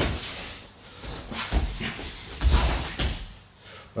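A person rolling and shifting his body on a training mat: clothing rustling against the mat, with two dull thumps of the body landing about one and a half and two and a half seconds in.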